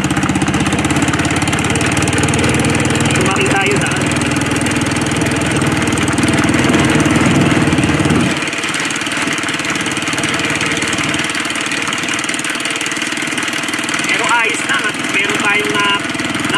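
Motorcycle engine running under way on a rough dirt road, steady and loud, then easing off about eight seconds in as the engine note drops.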